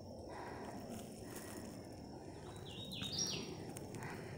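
A bird calling with a short run of four clear notes, each a little higher than the last, about two and a half seconds in, over a low rustle of movement.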